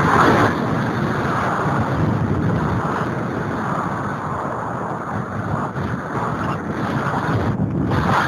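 Wind rushing over the microphone of a camera mounted on a radio-controlled glider in flight: a loud, dense, steady buffeting with no motor tone.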